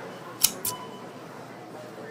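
Two quick scissor snips, a pair of sharp clicks about a fifth of a second apart, about half a second in.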